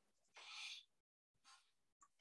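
Mostly near silence, with one soft man's breath lasting about half a second near the start and a fainter one about a second later.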